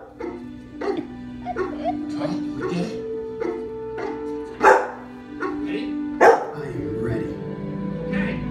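A dog barking several times over steady film-score music, the two loudest barks about five and six seconds in.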